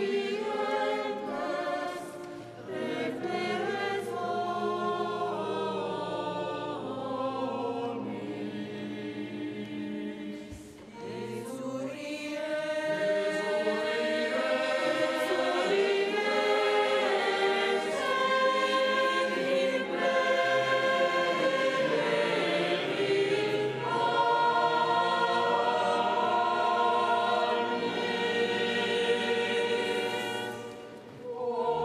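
Mixed church choir singing a sacred communion hymn, with a long held low note under the voices in the first third. There are brief pauses between phrases, and the singing grows fuller and louder from about twelve seconds in.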